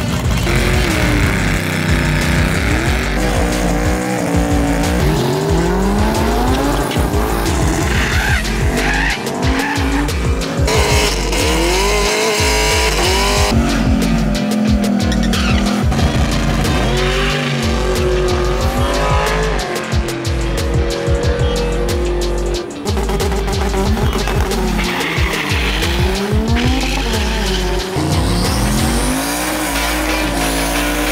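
Drag cars revving, launching and spinning their tyres, engines climbing and falling in pitch again and again as they pull through the gears, with tyre squeal and background music.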